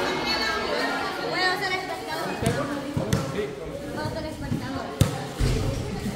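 A football thudding on a concrete court under a roof: three separate hits, the sharpest about five seconds in, amid background chatter.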